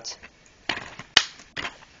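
Plastic DVD case and loose disc being handled: four sharp clicks and knocks over about a second and a half, the third the loudest.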